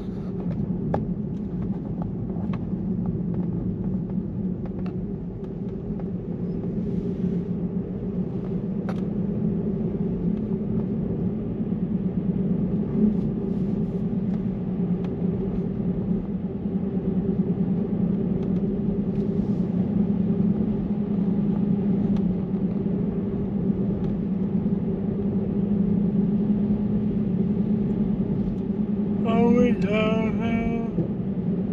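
Steady road noise inside a moving car's cabin: tyres rolling on asphalt with a constant low hum. A brief voice is heard near the end.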